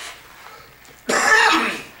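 A man coughs once to clear his throat, a single rough cough about a second in.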